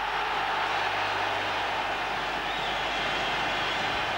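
Stadium crowd cheering after a football goal, a steady wash of noise with no break in it.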